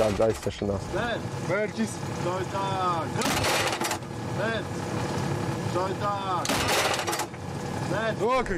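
A man's voice speaking over the steady running of an armoured combat vehicle's engine, with two short bursts of hissing noise about three and six and a half seconds in.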